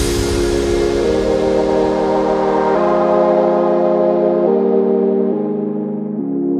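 Dubstep track in a beatless passage: held synthesizer chords that change every second or two, with no drums, under a wash of high noise that fades away.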